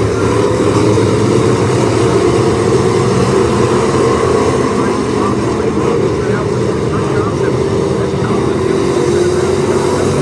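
A pack of Hobby Stock dirt-track race cars running together around the oval, their engines making a loud, steady roar.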